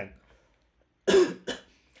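A man coughing twice about a second in, the first cough loud and the second shorter.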